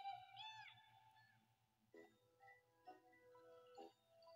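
A faint cartoon seagull squawk, one arching call about half a second in, followed by light background music with a few soft notes, heard through a television speaker.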